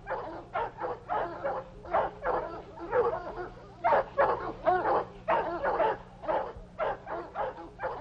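A dog barking and yelping over and over, about two or three short calls a second, some of them rising and falling in pitch.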